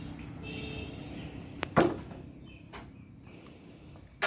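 Handling a fish-laden gill net: a small click, then one sharp knock with a short ring a little under two seconds in, over a low hum that fades away, with a few faint ticks afterwards.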